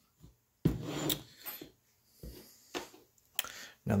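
A string of short knocks and rubs as printed plastic parts and a stepper motor are handled, picked up and set down on a cutting mat.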